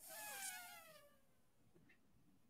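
A faint, short cry falling in pitch, under a second long, right at the start, followed by near silence.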